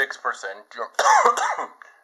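A man's voice making short vocal sounds between spoken words, loudest about a second in.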